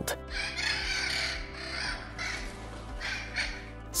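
Macaws squawking three times over a steady background music bed.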